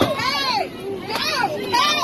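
Raised voices: a man finishes a yell and laughs, followed by three short, high-pitched shouts that swoop up and down in pitch.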